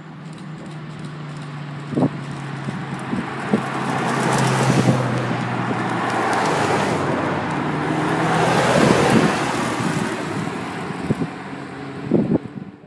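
Pagani V12 supercars, a Huayra and a Zonda, driving past one after another at low speed in convoy. The engine sound swells as each car goes by, loudest about four to five seconds in and again about nine seconds in.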